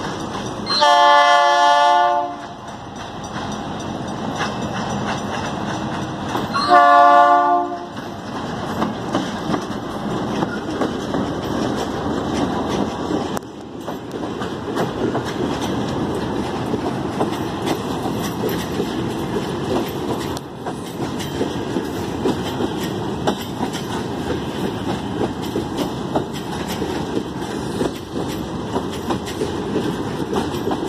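Diesel freight locomotive sounding its multi-note horn twice as it approaches a level crossing: a longer blast about a second in and a shorter one around seven seconds in. A long train of empty hopper wagons then rolls past over the crossing with a steady rumble and the clickety-clack of wheels over rail joints.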